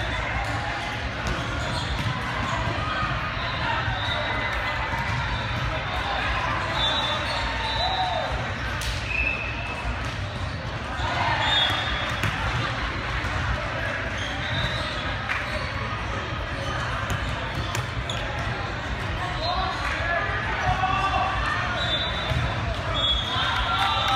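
Busy indoor volleyball hall: many overlapping voices, with scattered thuds of volleyballs being hit and bouncing on the courts and short high squeaks of court shoes, over a steady low hum.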